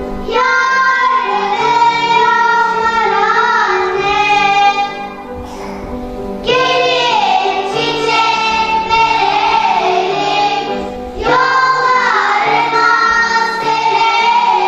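Children singing a song in phrases over a steady instrumental accompaniment, the voices pausing briefly about five and eleven seconds in.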